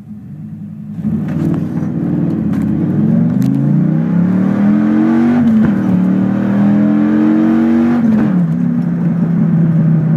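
Dodge Ram SRT-10's Viper-derived 8.3-litre V10 accelerating hard from low speed, heard from inside the cab. The engine note rises steeply, drops twice as the truck shifts up, about five and a half and eight seconds in, then holds steady.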